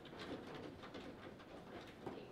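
Foosball table in play: a few light clicks and knocks of the ball and the plastic player figures as one side holds and works the ball, with the rods rattling faintly in their bearings.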